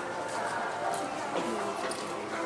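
Indistinct chatter of several people talking at once in a large indoor riding hall, none of it clear enough to make out.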